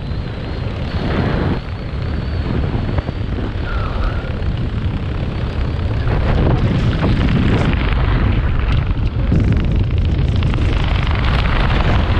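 Rushing wind buffeting a skydiver's camera microphone as a loud, steady roar that grows louder about six seconds in.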